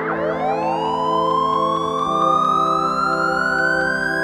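Electronic industrial music: a synthesizer tone sweeps up quickly, then keeps rising slowly and steadily over held drone chords, and the low chord shifts about halfway through.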